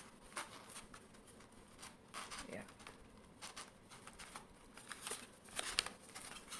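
Paper rupee banknotes and a paper envelope rustling and crinkling as notes are handled and slid into the envelope, a string of light crackles with a sharper cluster shortly before the end.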